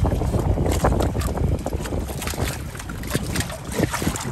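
Wind buffeting the microphone aboard a 29er sailing skiff, a steady rumble, with scattered knocks and taps from the boat and its rigging.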